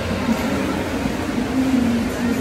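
Steady rumbling room noise of an indoor swimming-pool hall, with a faint wavering tone running through it.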